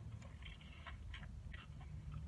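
Faint chewing of a mouthful of burger with crispy onion straws: a run of soft, irregular crunches and clicks.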